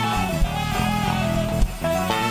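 Gospel praise-and-worship band music, an instrumental passage with guitar over a bass line and a drum beat.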